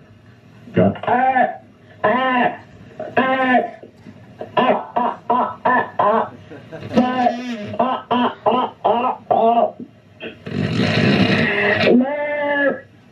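A performer's voice amplified through a microphone, making wordless vocal sounds in short syllables whose pitch rises and falls. About ten and a half seconds in comes a louder, rougher, noisier sound lasting about a second and a half.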